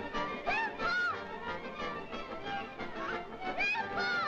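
Orchestral cartoon score, busy and agitated, with quick repeated strokes and high notes sliding up and down.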